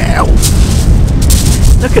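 Strong wind buffeting the microphone: a loud, steady low rumble that covers the whole scene.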